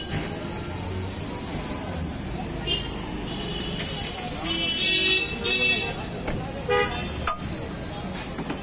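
Busy street soundscape: steady traffic noise with vehicle horns honking a few times, loudest around the middle, over background voices.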